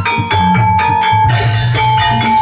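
Live Javanese gamelan accompaniment for a dance: a steady rhythm of hand-drum strokes under ringing metallophone strikes, with one high note held over the top.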